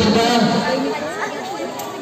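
Several people's voices talking and calling over one another in a gym hall, as indistinct chatter.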